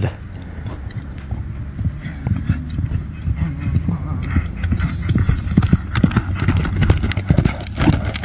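Horse's hooves drumming on soft ploughed earth at a gallop, the beats growing louder and closer as it comes toward the listener.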